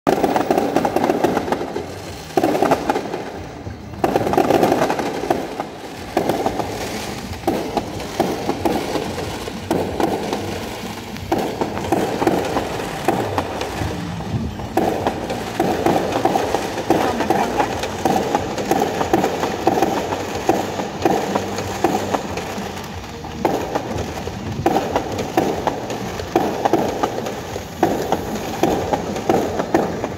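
Fireworks bursting and crackling in a dense, continuous barrage of irregular bangs, heard from inside a car, so the sound is dull with little treble.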